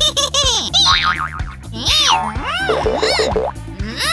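Bouncy cartoon music with a steady beat. Over it runs a string of springy boing sound effects, each one's pitch arcing up and then back down.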